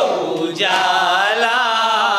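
A group of men chanting a Shia mourning lament (nauha) in unison, one sung phrase ending and the next starting about half a second in.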